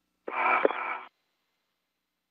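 A brief snatch of radio communication, under a second long, thin and cut off at the top as through a space-to-ground radio link.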